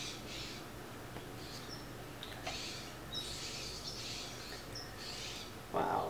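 Fingertips rubbing liquid foundation into the skin of the chest, a soft swishing that comes and goes. A few faint, short bird chirps sound in the background.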